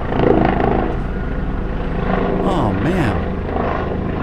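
Helicopter flying over, the steady beat of its rotor blades filling the room; it is so loud.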